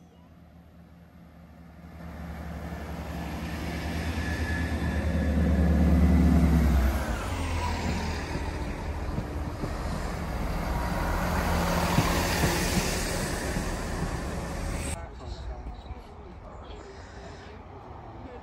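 A diesel passenger train passing through the station close by. A deep engine drone builds and is loudest around six seconds in, then gives way to the steady rumble of the coaches rolling past, which cuts off abruptly near the end.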